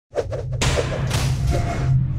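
Animated logo intro sting: a few quick thumps, then two whooshes over a steady low bass drone.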